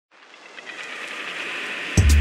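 A hiss of noise fades in from silence and swells steadily louder, building up to intro music that starts right at the end.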